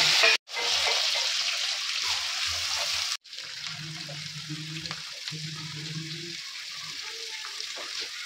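Chopped vegetables frying in oil in a kadhai on a gas stove, a steady sizzle with the scrape of a steel slotted spoon stirring. The sizzle is louder for the first few seconds and softer after that.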